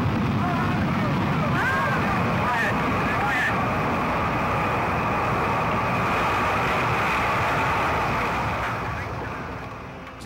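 Jupiter-C (Juno I) rocket lifting off at night: a loud, steady engine roar that fades away over the last second or so as the rocket climbs out of earshot.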